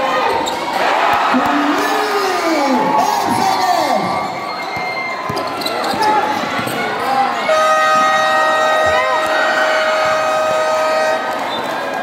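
Live basketball play on a concrete court: the ball bouncing, sneakers squeaking and a crowd shouting. From about seven and a half seconds in, a long steady tone is held for about three and a half seconds over the crowd.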